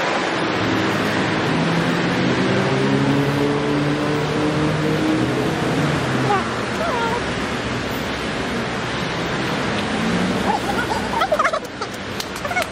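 Busy city street noise picked up while walking: a steady rush of traffic and wind on the phone microphone, with a vehicle engine humming through the first half. A few short high chirps come in near the end.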